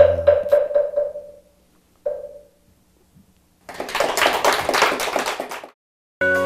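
An audience applauding for about two seconds before it cuts off abruptly. Before the applause, a fading tone rings briefly and then pings once more.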